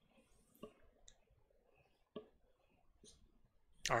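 A few faint, isolated clicks, about four spread over a few seconds, against a quiet room; just before the end a voice starts.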